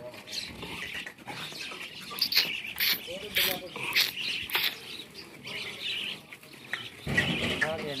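Outdoor farmyard sound of small birds chirping, broken by several sharp clicks between about two and four and a half seconds in. A man's voice comes in near the end.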